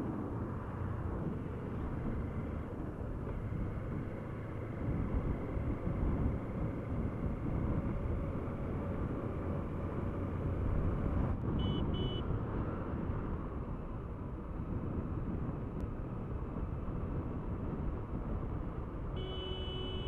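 A motorcycle running on the move, with wind buffeting the microphone and road noise as one steady low rush. Two short high beeps sound just before the middle, and a steady tone of several pitches begins near the end.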